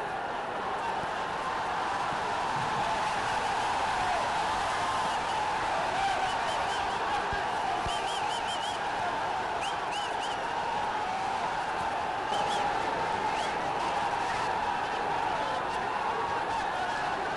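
Steady murmur of a large crowd, many voices blurred together, with short high chirps in twos and threes and scattered faint clicks through the middle.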